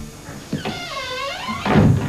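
A single drawn-out animal call, about a second long, its wavering pitch dipping and then rising again. A short, loud thump follows near the end.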